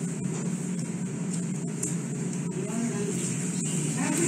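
Steady background hum and hiss, with faint, low talking in the room.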